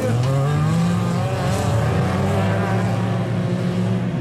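Engines of a pack of hatchback dirt-track race cars running hard at racing speed, one engine rising in pitch during the first second and then holding steady.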